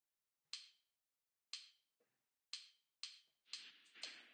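Yousician app's count-in metronome clicking before the song starts: sharp woodblock-like ticks, the first three a second apart, then quickening to two a second.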